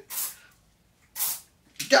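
Two short hisses from a Glade aerosol air-freshener can being sprayed, about a second apart.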